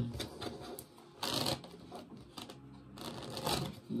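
Tarot cards being handled and shuffled on a table, with two short rustles of the cards, about a second in and near the end.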